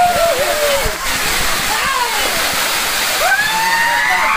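Waterfall pouring onto rock, a steady loud rush of falling water, with several voices calling out over it now and again.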